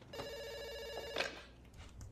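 Landline telephone ringing with a fast electronic trill for about a second, then cut off with a short clatter as the handset is picked up.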